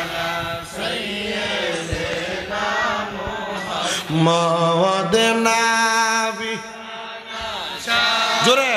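A man's voice chanting a slow melodic line into a microphone, holding long notes that step up and down in pitch, with short pauses for breath between phrases.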